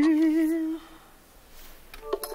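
A voice humming or singing one held note with a slow vibrato, which dies away under a second in.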